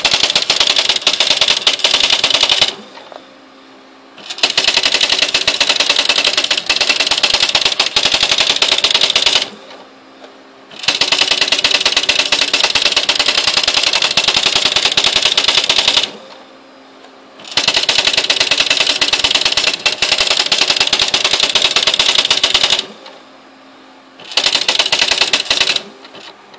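Smith Corona SL575 daisy-wheel electronic typewriter printing its built-in demonstration text by itself: a rapid, even clatter of characters striking the paper. It comes in runs of about five seconds, broken four times by pauses of a second or two where only a low hum is left.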